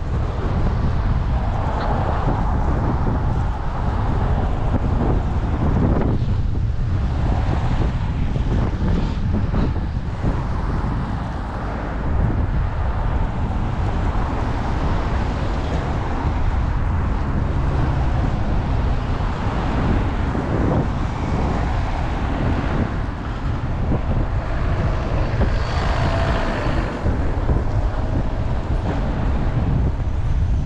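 Wind buffeting the microphone with a steady low rumble, over cars passing on a snowy, slushy road.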